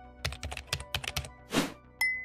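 Computer keyboard typing sound effect: a quick run of about ten key clicks, then a short whoosh near the end, over soft background music.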